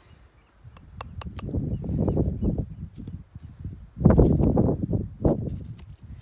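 Wind buffeting the microphone in two gusts, a low rumble that is loudest about four seconds in, with light clicks of a palette knife working thick acrylic paint out of a plastic tub.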